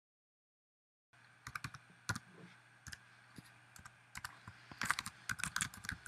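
Typing on a computer keyboard: irregular keystrokes in short flurries over a faint hum. They begin about a second in, after dead silence, and come thickest near the end.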